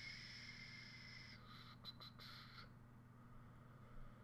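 Near silence: room tone with a steady low hum, and faint high-pitched broken tones that stop about two-thirds of the way through.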